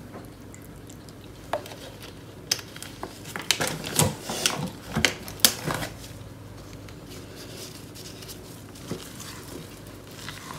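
A wooden spatula stirring thick clay paste in a plastic measuring jug: a quick run of knocks and scrapes against the jug for a few seconds, then dying down.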